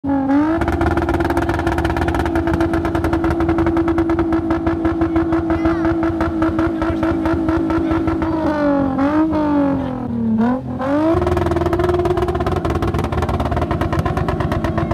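Toyota Mark X 250G's 2.5-litre V6 engine held at high revs during a stationary burnout, the rear tyres spinning in thick smoke. The pitch stays steady, sags and wavers for a couple of seconds about nine seconds in, then climbs back and holds high again.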